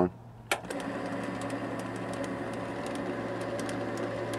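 MX210 mini lathe switched on with a click about half a second in, then running steadily with its six-jaw chuck spinning: an even motor and gear hum with light, regular ticking.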